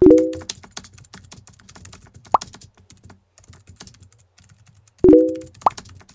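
Chat-message pop sound effects: a short rising blip with a low pitched pop at the start, another blip in the middle, and another pop and blip near the end. A run of faint keyboard-typing clicks fills the time between them.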